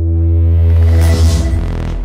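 Synthesized sound design for an animated logo intro: a deep electronic hum with overtones builds in loudness, and a rushing swell of noise rises about a second in, peaks and fades.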